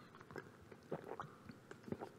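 Faint swallowing and mouth sounds of a man drinking from a bottle, with a few soft clicks as he lowers it and handles it.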